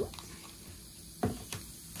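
Low room noise with one short tap a little past halfway, while an orange slice is pushed into a wine glass of spritz at a table.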